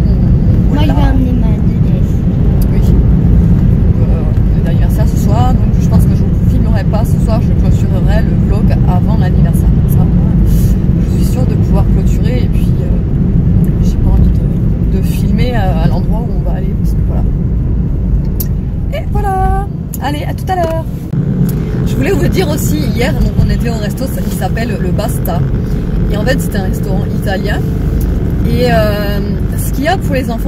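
Steady low rumble of road and engine noise inside a moving car's cabin, with a woman's voice talking in snatches over it.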